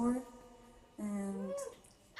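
A woman's voice singing softly with hardly any instruments behind it: a short note at the start, a quieter stretch, then a held low note about a second in that ends in a brief rising-and-falling slide.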